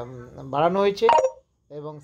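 A man speaking, with a short electronic phone notification tone about a second in, overlapping the end of his phrase.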